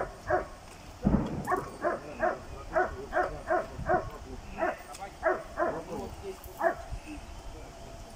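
Search-and-rescue dog barking repeatedly and steadily, about two to three barks a second, the bark alert by which a rescue dog marks a person found under the rubble. The barking breaks off briefly about a second in and stops near the end.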